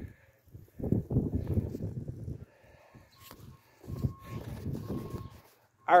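Wind buffeting the microphone in two gusts of low rumble, each lasting about a second and a half.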